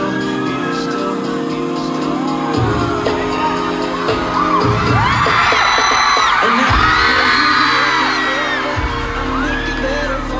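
Pop dance track with a heavy beat played loud over a concert sound system, with the audience screaming and whooping over it, loudest from about halfway through.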